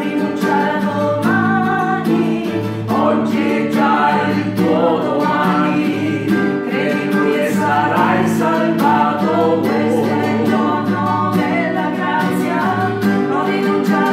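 Small mixed group of two women and a man singing a worship song together, accompanied by a strummed acoustic guitar.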